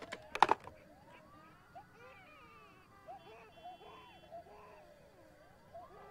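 A corded telephone handset hung up on its cradle: a few sharp clicks about half a second in. After it, quiet film score music with long, slowly gliding tones.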